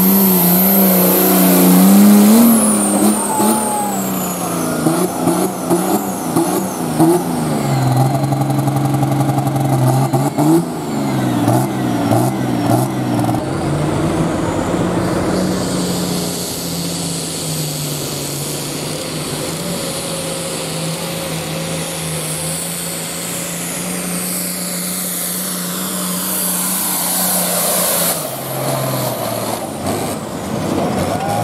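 Diesel farm tractor engine running at high revs under heavy load while pulling a weight-transfer sled, its pitch climbing, then dropping and recovering through the first dozen seconds before settling to a steady drone. The drone shifts down again near the end.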